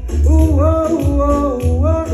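A man singing a melody into a handheld microphone over a pop backing track with a pulsing bass beat.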